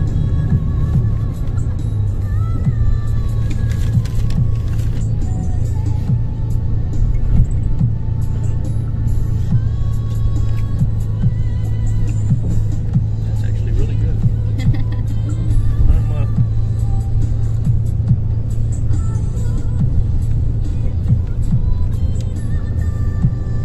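Steady low engine drone heard from inside a moving bus, with music playing over it.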